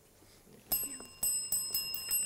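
A bell ringing out with repeated strikes, starting suddenly about two-thirds of a second in after a near-silent pause; it signals that time is up and the quiz match is over.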